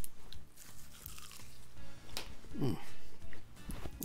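Someone biting into a crisp, tempura-battered deep-fried shrimp, a few separate crunches of the fried batter crust.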